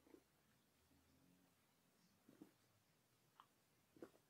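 Near silence, with a few faint, short mouth sounds of a sip of beer being swallowed and tasted.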